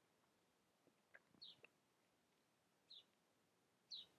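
Near silence, with faint short high chirps repeating about every second and a half, from a small bird, and a couple of faint clicks near the middle.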